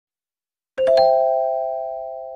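A chime sound effect of three notes rising in quick succession, about three-quarters of a second in, left ringing and fading slowly.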